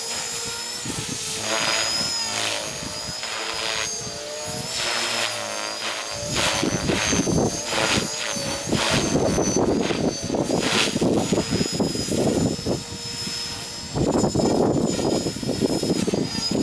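Radio-controlled helicopter in flight: a steady high-pitched whine that wavers slightly in pitch as it manoeuvres. Irregular low rumbling bursts come and go over it, loudest near the end.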